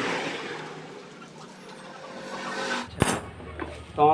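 Road traffic noise swelling and fading, like vehicles passing by, with a single sharp knock about three seconds in.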